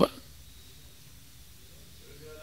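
The last syllable of a man's speech right at the start, then a pause with only quiet room tone.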